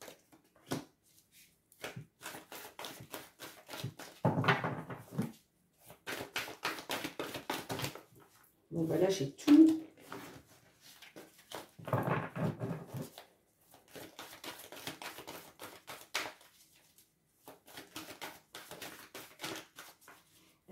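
A deck of oracle cards being shuffled by hand, giving spells of quick dense clicking and riffling, with louder bursts about four, nine and twelve seconds in.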